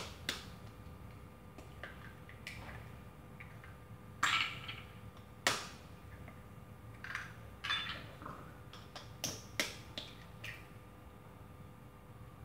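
Eggs being cracked with a kitchen knife over a plastic bowl: sharp taps of the blade on the shells, scattered a second or two apart, the strongest a little after four seconds and again near five and a half.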